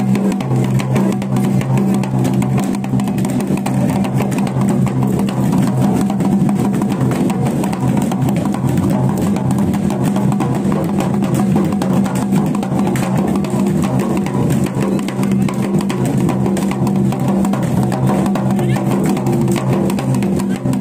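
Drums beaten in a fast, continuous rhythm for a dancing deity palanquin (doli), over a steady low tone.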